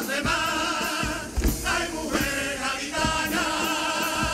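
Male comparsa choir singing a pasodoble in full-voiced harmony over Spanish guitars, with a few drum beats. The voices hold a long chord through the last second.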